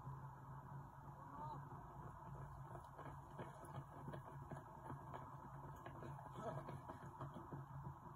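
Running footsteps on a tarmac path as a line of race runners passes close by, a run of quick faint taps from about three seconds in until near the end, over a low steady hum.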